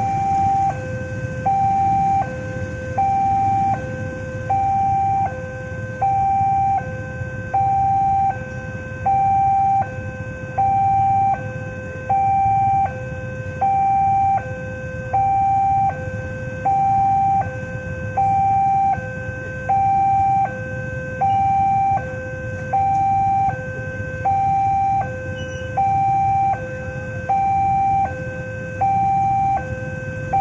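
Railroad level-crossing warning alarm: an electronic two-tone chime alternating a higher and a lower note about once a second, steady and unchanging, signalling that the barriers are down for an approaching train. A low rumble lies beneath it.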